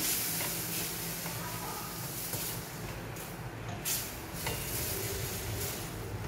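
Spiced vegetable filling frying gently in a stainless steel pan, stirred with a wooden spatula: a steady low sizzle with soft scraping of the spatula against the pan and a couple of light taps about four seconds in.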